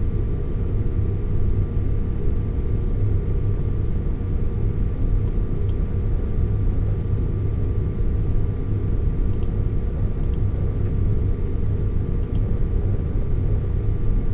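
Steady low background rumble, with faint steady tones above it and a few faint clicks scattered through the middle.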